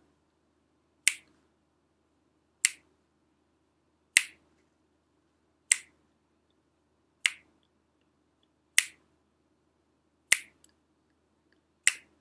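Finger snaps keeping slow, even time for an a cappella song: eight single snaps about one and a half seconds apart.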